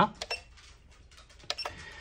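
Button presses on a SkyRC T200 LiPo battery charger, each click with a short electronic beep from the charger as it steps through its menu: a pair near the start and another pair about a second and a half in.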